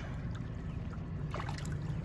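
Boat motor running with a steady low hum while trolling, with light water sounds around a landing net held in the lake.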